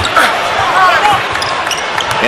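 Basketball court sound: sneakers squeaking on the hardwood floor and a ball bouncing, over the steady hum of an arena crowd. A few short squeaks come around the middle.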